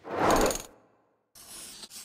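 Two short sound effects: a loud rattling burst lasting about half a second, then after a pause a fainter, higher hiss near the end.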